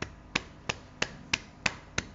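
A steady rhythm of sharp hand-made clicks, about three a second, evenly spaced.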